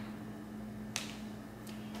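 Quiet kitchen with a steady low hum, broken by one light click about a second in and a fainter one near the end: a plastic spoon tapping against a jar and blender cup as cinnamon is spooned into a blender cup.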